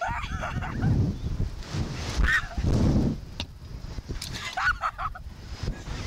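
Riders' short shrieks and yelps on a Slingshot reverse-bungee ride, three brief cries near the start, about two seconds in and about five seconds in, over wind buffeting the camera's microphone as the capsule swings.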